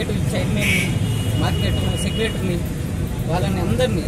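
A man talking, over a steady low rumble of road traffic.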